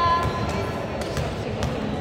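A basketball being dribbled on an indoor court, a few sharp bounces in the second half, over background voices in the hall.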